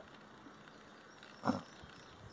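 Quiet field ambience, broken once about one and a half seconds in by a short voiced sound, like a brief grunt or hum.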